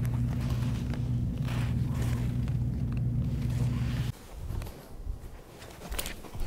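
A steady low hum that cuts off suddenly about four seconds in, followed by faint rustling of cloth being handled.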